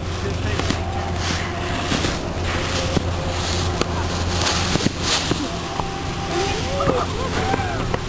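A snowboard sliding and scraping over packed snow in repeated hissing strokes, over a steady low hum. Indistinct voices can be heard in the background.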